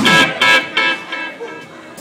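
A stop in a live rock band's song: the drums and bass drop out, leaving a few short high-pitched notes or cries in the first second that fade away quietly.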